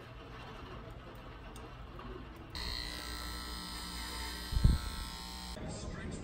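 Faint background noise, then a steady electric buzz with several held tones that starts abruptly about two and a half seconds in and cuts off about three seconds later. A single thump comes near the end of the buzz.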